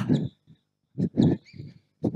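A woman's voice making several short "bom" sounds, vocal cues marking each defensive slide and plant.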